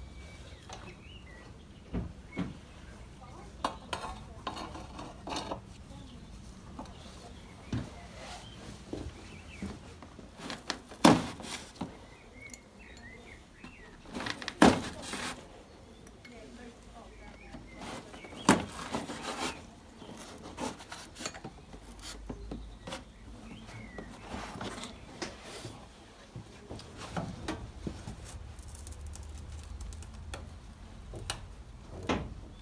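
Metal clinks and clanks of valve-train parts, the rocker shaft assembly and pushrods, being lifted out of a Land Rover Series 2A engine's cylinder head. The knocks are scattered and irregular, with sharper clanks about 11, 15 and 18 seconds in.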